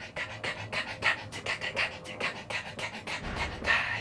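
A man's breathy vocal percussion: a fast rhythmic run of short puffs and clicks from the mouth, several a second, imitating a tap dancer's steps.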